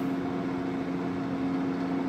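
Steady mechanical hum with a constant low buzzing tone and its overtones, from a running motor or appliance.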